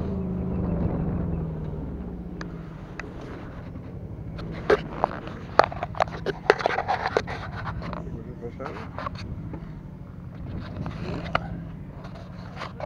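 Engine of an aerial work platform running steadily with a low hum while the bucket is moved. Between about four and nine seconds in, a run of sharp clicks and scrapes comes from handling in the bucket and at the twig nest.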